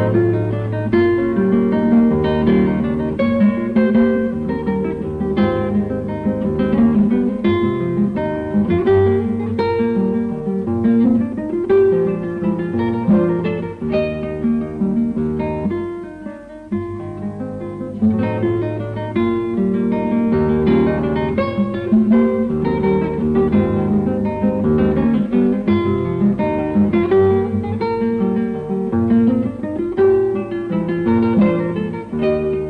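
Solo classical guitar playing a Venezuelan waltz, plucked melody over a bass line, with a brief lull between phrases about halfway through.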